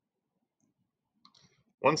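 Near silence, then a faint short click a little over a second in, and a man's voice starts speaking near the end.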